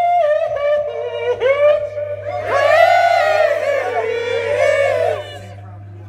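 Rock singer and crowd holding the last sung note together at a live show, the voices wavering on one long note, fuller in the middle, then cutting off suddenly about five seconds in. A steady low amplifier hum is left underneath.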